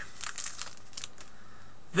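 Foil and paper wrapper of a Kit Kat Chunky faintly crinkling as it is pulled open by hand, mostly in the first second.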